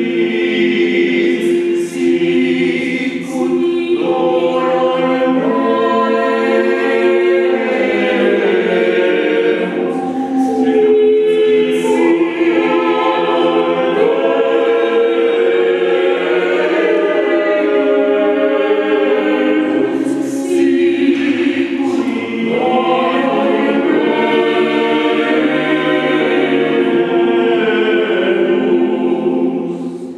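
Mixed-voice vocal octet singing a cappella in sustained chordal harmony, with a few hissed "s" consonants sung together.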